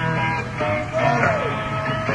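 Live rock band playing, led by an electric guitar, with a bent guitar note gliding up and down about a second in.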